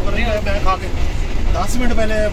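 Steady low running rumble of a Green Line Express passenger coach in motion, heard from inside the carriage, with a man's voice over it in short stretches.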